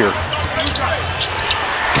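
A basketball being dribbled on a hardwood arena court in NBA game broadcast sound, with short high squeaks of sneakers scattered throughout.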